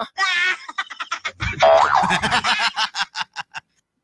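A comic cartoon-style sound effect played over the radio broadcast: a wobbling, springy pitched sound followed by a quick rattle of short repeated hits and a low thump about a second and a half in.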